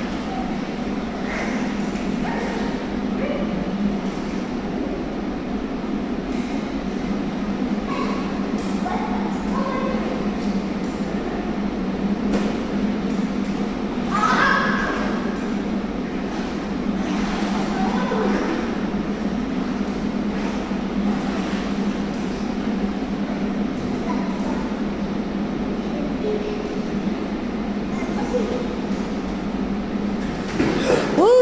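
Steady hum and hiss of an indoor pool room, with the water of a child swimming splashing lightly through it. A short voice sound cuts in about halfway.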